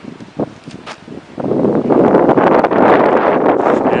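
Wind buffeting the camera microphone: a loud, even rushing noise that sets in about a second and a half in, after a couple of faint clicks.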